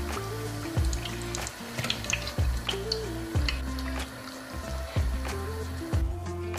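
Background pop music with a bass line and a steady beat, without vocals.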